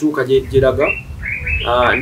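A bird calling with clear whistled notes that step upward in pitch, over a low rumble, with a voice in the first second.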